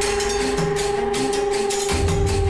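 Dramatic background score: one sustained note held over quick ticking percussion and a low rumble.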